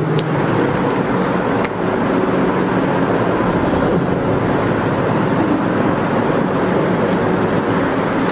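Steady rushing background noise with a faint low hum, as loud as the speech around it.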